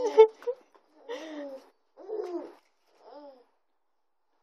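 A baby laughing and cooing in four short, high-pitched bursts, each rising and then falling in pitch, the first one the loudest.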